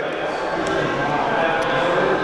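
Steady background hubbub of a large indoor space with faint distant voices, and a couple of light ticks from handling.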